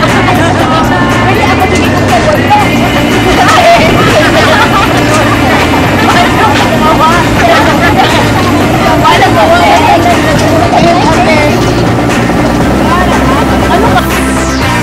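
Many voices talking and laughing at once, a lively babble of a group, over a steady low hum.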